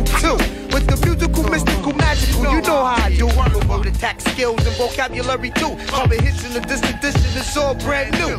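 Hip hop music: a rapped vocal over a heavy bass line and drums.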